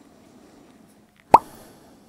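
A single short, sharp pop about a second and a third in, much louder than the faint room noise around it.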